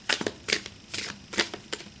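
A thick-cardstock tarot deck being shuffled hand over hand: about five or six irregular slaps and clicks as packets of cards drop from one hand onto the other.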